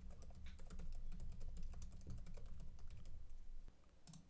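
Typing on a computer keyboard: a fast, even run of keystrokes, about six a second, stopping shortly before the end, over a faint low hum.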